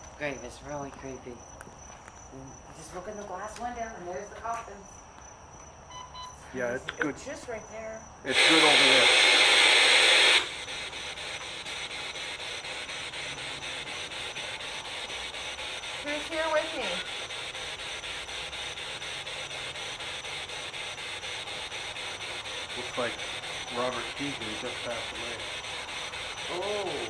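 Radio static: a loud burst of hiss about eight seconds in, then a steady static hiss with faint, broken voice-like fragments in it.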